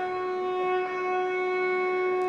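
Carnatic violin holding one long, steady bowed note in raga Mohanam.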